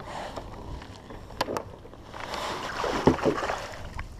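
Water lapping and splashing around a kayak, with a few light clicks about a second and a half in.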